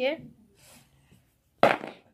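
A child's brief words, then a single short, sharp noise about a second and a half in.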